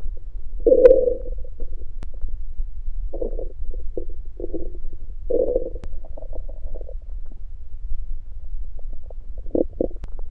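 A hungry man's stomach growling and gurgling after fasting, in a string of short, irregular gurgles. The loudest comes about a second in, with a quick double gurgle near the end.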